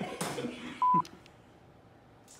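A short, steady electronic bleep of one pure pitch, lasting about a fifth of a second just under a second in: a censor bleep edited into the soundtrack. It comes after a moment of a woman's laughing speech.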